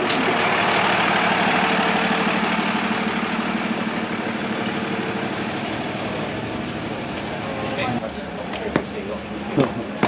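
A large vehicle's engine running, a steady drone that slowly fades over about eight seconds. After that, quieter street sound with a few short voices and clicks.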